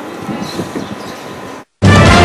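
Steady outdoor street noise, a rough haze with some irregular low rumble, that cuts off abruptly near the end. Loud music starts right after the cut, just before the end.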